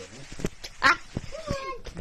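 A person laughing in a few short, high-pitched bursts, with a word spoken in between.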